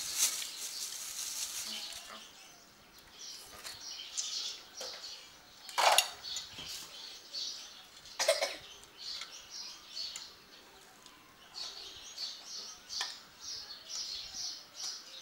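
Spoons and an aluminium pot clinking against plates during a meal, with two sharp clinks about 6 and 8 seconds in. Short high chirps, likely small birds, run through the background.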